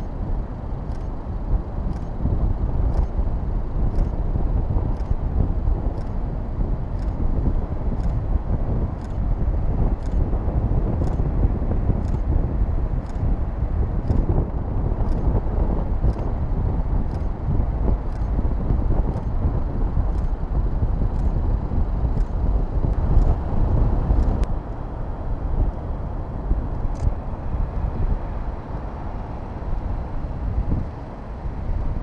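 Wind rumbling on the microphone with surf behind it: a steady rushing noise, heaviest in the low range, with faint ticks about twice a second.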